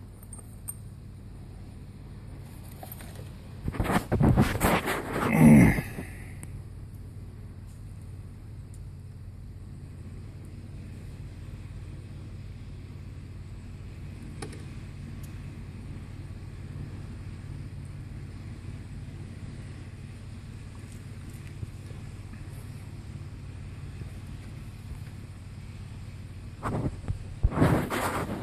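A steady low hum, broken by a cluster of loud clattering knocks about four to six seconds in and again just before the end.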